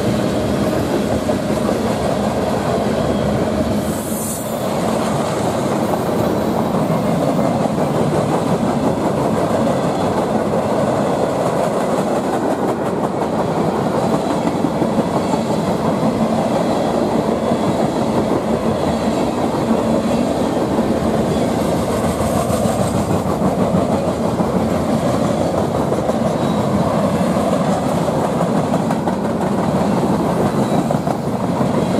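Freight cars of a CSX manifest train, mostly tank cars with covered hoppers, rolling past at speed: a steady rumble of steel wheels on rail with rhythmic clickety-clack over the rail joints. The sound dips briefly about four seconds in.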